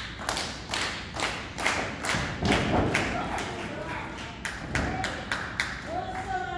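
Crowd clapping in unison at a steady beat of about three claps a second.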